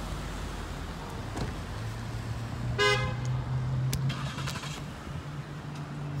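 A car engine hums low and steady, setting in about two seconds in, with one short car-horn toot about three seconds in and a few faint clicks.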